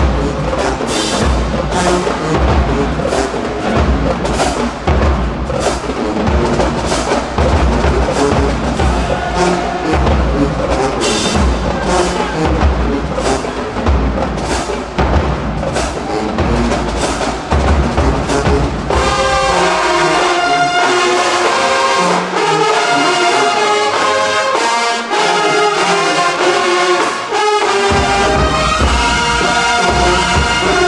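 HBCU-style marching band playing a brass-heavy tune, with bass drums, snares and crash cymbals beating out a strong pulse under the horns. About nineteen seconds in, the drums and low brass drop out and the trumpets and horns carry the tune alone. The full band with its low end comes back in near the end.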